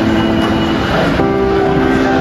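Background music of sustained held chords, moving to a new chord a little over a second in.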